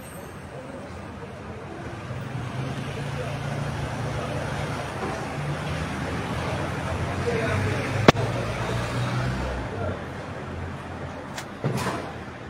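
A car passing on the street, its engine and tyre noise swelling over several seconds and then fading. A single sharp click comes about eight seconds in, and another knock comes near the end.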